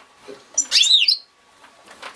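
Caged goldfinch giving one short, loud call about half a second in, a note that slides down in pitch and then turns back up.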